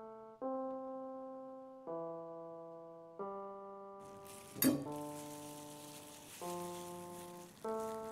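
Background piano music: slow chords struck about every second and a half, each fading away. About halfway through a faint hiss comes in under the music, with one sharp click soon after.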